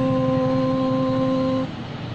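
A man singing one long, steady held note on an 'oo' vowel, the sustained end of the sung phrase 'shwas tu', that stops about a second and a half in.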